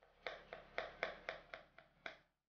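Kitchen knife slicing a tomato on a cutting board: quick, even chops about four a second, each a sharp knock of the blade on the board.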